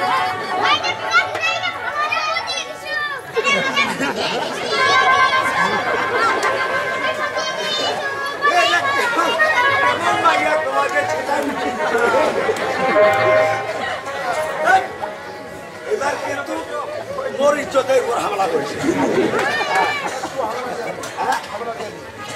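Loud spoken stage dialogue from folk-drama actors, declaimed over the chatter of a close crowd.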